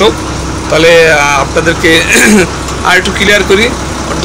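A man talking over the steady low hum of a double-decker bus engine idling.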